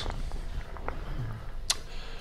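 A pause in speech: low steady room hum with a faint voice briefly in the background, a few small ticks, and one sharp click near the end.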